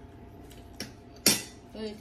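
Metal fork clinking against a plate: a faint tap, then one sharp, louder clink a little past the middle, followed by a voice near the end.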